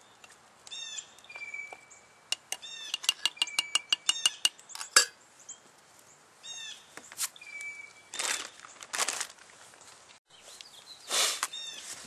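A songbird calling outdoors, repeating a short chirping phrase with a level whistle several times. About two and a half seconds in there is a quick run of sharp clicks, a metal spoon knocking and scraping in a metal cook pot, lasting a couple of seconds.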